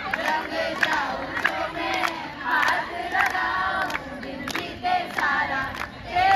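A crowd of women and girls singing and calling out together, with sharp hand claps at uneven intervals.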